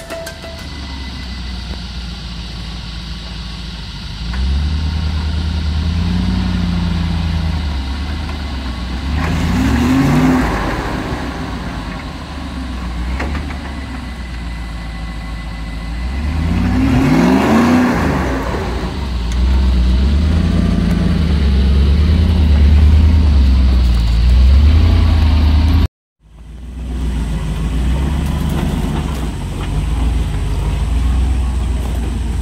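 Land Rover Discovery 1 V8 engine labouring under load as it crawls over rocks. The revs climb twice, about a third of the way in and again past halfway. The sound drops out briefly near the end.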